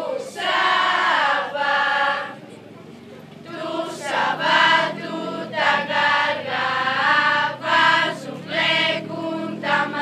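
A group of girls singing a traditional Lazarus carol (Lazarines' song) together, the phrases breaking for a short pause about two and a half seconds in before the singing resumes.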